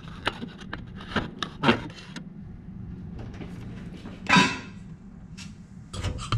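Knocks and bumps from a camera being handled and set in place, with one louder, longer noise a little past the middle, over a faint steady low hum.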